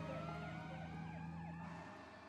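A siren in a fast yelp, about four up-and-down sweeps a second, fading away, over a steady low hum.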